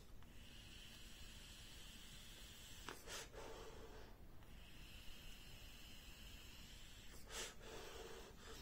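Faint hiss of air being drawn through an Uwell Caliburn G pod vape on its looser airflow setting. There are two long drags, each followed by a short breathy exhale.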